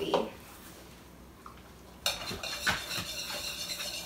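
A wire whisk beating a liquid mix of egg yolks, milk and vanilla in a mixing bowl. It starts about halfway in, with quick, uneven strokes against the bowl.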